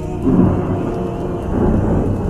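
A thunderclap breaks about a quarter of a second in and rolls on into a long rumble that swells again near the end. It is a thunder sound effect laid over a slowed nasheed.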